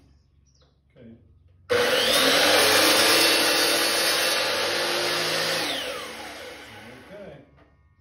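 DeWalt sliding miter saw switched on about two seconds in, its whine rising as the motor spins up, then cutting through a hockey stick shaft. After a few seconds it is released and winds down, the whine falling over about a second and a half.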